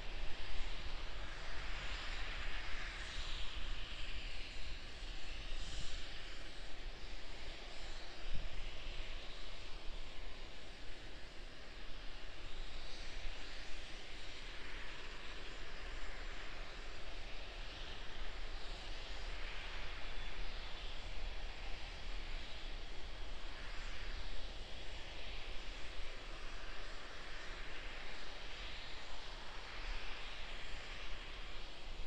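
Steady rushing hiss of a Starship prototype venting propellant on its launch pad during propellant loading, swelling and easing in patches, with a low rumble underneath.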